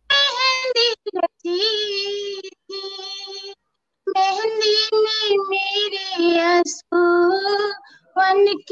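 A woman singing unaccompanied, a Hindi film song in long held, wavering notes broken into short phrases. The sound cuts out to complete silence between phrases, longest just before the middle, as it does over a video-call connection.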